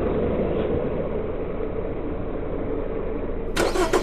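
Truck engine running steadily, heard from inside the cab. A short, louder burst of noise comes near the end.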